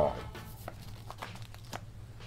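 Rustling and crinkling of a cloth money sack being opened and a bundle of paper bills pulled out, heard as a few short, scattered soft clicks and rustles.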